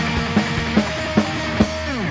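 Rock band playing live: drums hit about two and a half times a second under sustained guitar chords, and near the end the pitch of the guitars slides down.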